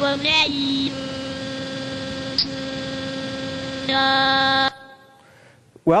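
Untrained NETtalk neural network's output played through a speech synthesizer: babbling at one unchanging pitch, running into a long held drone that gets louder about four seconds in and then cuts off suddenly. This is the network at the very start of training, before it has learned the right sounds for the letters.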